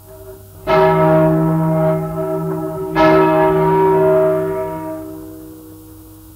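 A single large church bell, the 1155 kg Our Lady (O.L.V. Hemelvaart) bell cast in 1871, rung alone and striking twice a little over two seconds apart, each stroke ringing out and dying away. It is heard from a restored 1943 78 rpm disc recording.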